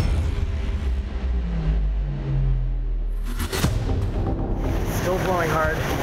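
Hurricane-force wind roaring, with a sharp crack about three and a half seconds in and high wavering whistling near the end.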